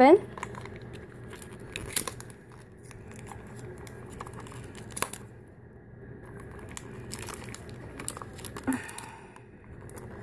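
Fingers picking and pulling at a small sealed cardboard blind box, its packaging crinkling softly with a few sharp clicks; the box is hard to open.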